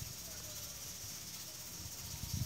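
Faint, steady high hiss of background ambience with a low rumble underneath, and no distinct event.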